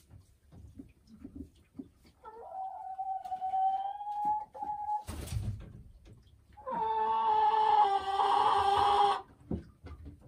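A hen giving two long, drawn-out calls, each held at a steady pitch for two to three seconds; the second, starting near the middle, is louder and harsher. A short knock falls between the two calls.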